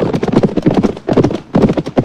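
Several horses galloping: a fast, dense run of hoofbeats.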